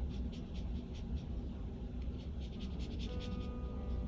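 Water brush pen dabbing and brushing watercolor onto paper: a quick run of short, soft scratchy strokes, several a second.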